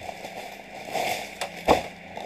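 Rustling and crackling of a stiff tulle dress being handled, with one sharp click about three-quarters of the way through.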